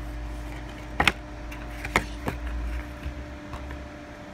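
Plastic DVD case being handled: a few sharp clicks and taps, a pair about a second in and two more around the two-second mark, over a low rubbing rumble that fades out near the end.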